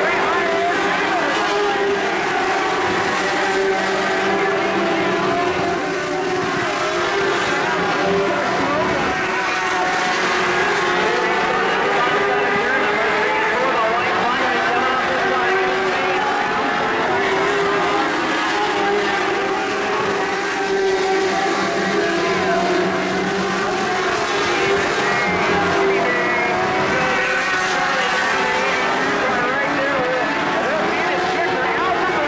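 Several Mod Lite race cars' engines running hard around a dirt oval, the overlapping engine notes wavering up and down as the cars work through the turns.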